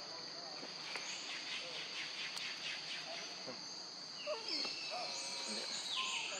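Forest insects droning steadily at a high pitch, with a rapid pulsing chirp between about one and three seconds in. Short wavering calls rise and fall over the drone in the second half.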